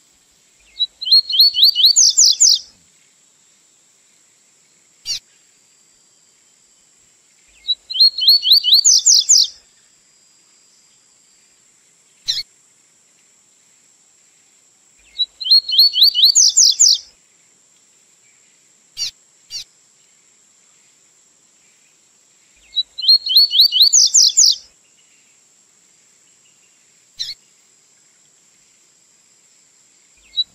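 Male double-collared seedeater (coleirinho) singing the tui-tui song from a song-tutoring recording for young birds. It sings four phrases about seven seconds apart, each a quick run of high rising notes lasting under two seconds, with single short call notes between them. A faint, steady high whine runs underneath.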